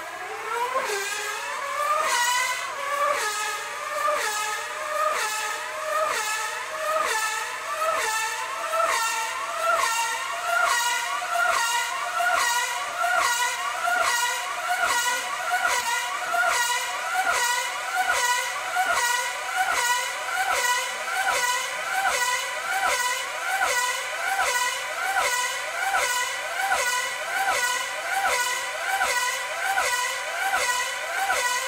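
A 5cc Class 4 tethered speed model car's two-stroke glow engine running flat out as the car circles on its tether line. It is a high-pitched engine note whose pitch climbs over the first few seconds and then holds steady. Each lap adds a quick rise and fall in pitch and loudness as the car passes, about 1.3 passes a second, as it holds close to 295 km/h.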